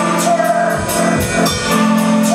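Live rock band playing: a drum kit keeps a steady beat with cymbal strokes about four times a second under sustained electric guitar chords.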